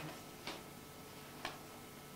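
The tail end of a brief laugh, then two short sharp ticks about a second apart over faint room hum.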